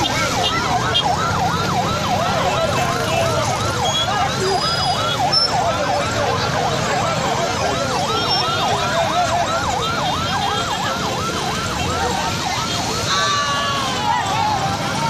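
Electronic yelp siren sweeping rapidly down and up, about three to four times a second, over a steady hubbub of street noise. Near the end the siren stops and a horn sounds briefly.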